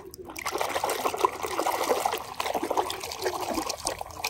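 Water sloshing and splashing in a bucket as a hand swishes a muddy toy auto rickshaw through it to wash it. The sound starts just after the beginning and stops near the end.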